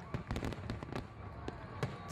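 Fireworks sound effect: a dense run of small crackles and pops at a moderate level.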